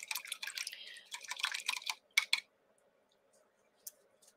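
Light clicks and scratchy taps in quick clusters over the first two and a half seconds, then a single click near the end: small painting tools being handled on the work table.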